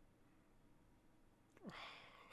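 Near silence, then near the end a short breathy exhale from a man, a sigh-like breath with a falling voiced note.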